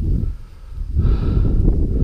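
Low rumbling wind and handling noise on a body-worn microphone, with a man's heavy, out-of-breath breathing; a breathy exhale or gasp comes about a second in.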